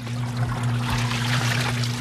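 Washing machine running its pre-wash cycle: water pouring and splashing in the tub over a steady low hum.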